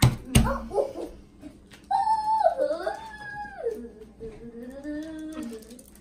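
Two dull thumps right at the start, then about two seconds in a long wordless whining vocal that slides down in pitch and trails on for nearly four seconds.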